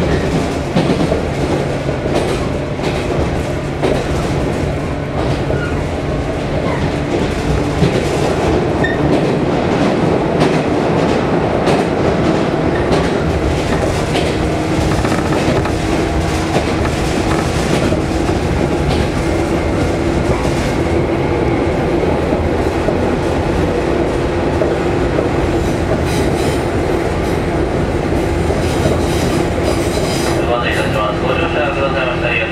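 Cabin sound of a JR 115-series electric train running: steady rumble of the car with wheels clicking over the rail joints. A steady low hum joins about halfway through and holds.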